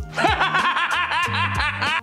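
A short comic laugh-like sound effect, a quick run of high-pitched giggling chirps, over background music with steady low notes.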